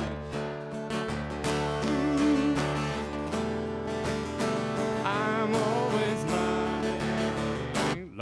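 Acoustic guitar strummed in a steady rhythm, chords ringing between strokes under a second apart.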